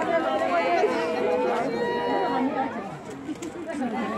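Several people chattering at once, their voices overlapping, growing quieter about three seconds in.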